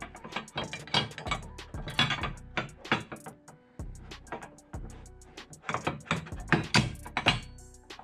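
Irregular clicks and knocks of a UTV roof panel and its metal rear mounting bracket being handled and pushed into place against the roof rail.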